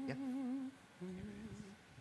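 A person humming a held, wavering note, then a second, lower note about a second in.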